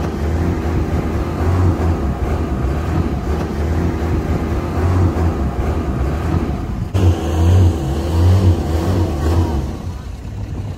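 Longtail boat engine running steadily, with wind and water noise. After a sudden cut about two-thirds of the way through, the engine is louder and surges twice.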